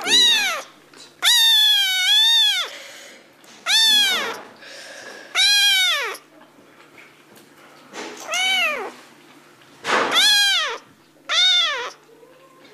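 A cat meowing seven times in a row, each meow rising then falling in pitch; the second is the longest, with a dip in the middle.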